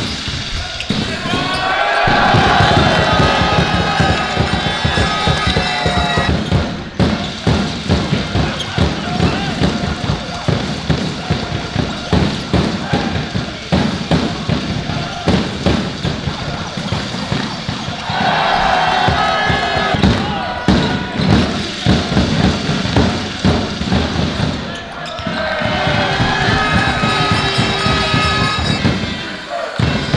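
A basketball being dribbled on a hardwood court during live play, making a run of repeated bounces. Voices call out on court in three stretches: about two seconds in, around eighteen seconds and again near twenty-six seconds.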